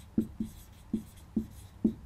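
Dry-erase marker writing on a whiteboard: about five short strokes in two seconds, unevenly spaced.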